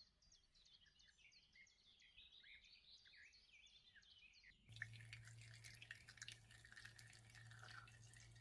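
Very faint: small birds chirping in the background, then, about four and a half seconds in, blended cucumber and aloe juice dripping and trickling from a squeezed cloth straining bag into a plastic jug, over a low hum.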